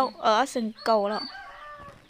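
A woman talking loudly, then a fainter, drawn-out animal call in the second half.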